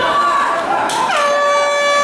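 An air horn sounds one long steady blast, starting about a second in with a slight drop in pitch.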